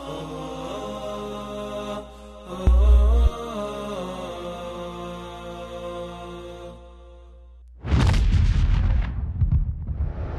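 Broadcast ident music of sustained, slowly shifting tones, with a short, deep boom about three seconds in. The music fades out near seven seconds, and a loud whooshing transition effect follows about a second later.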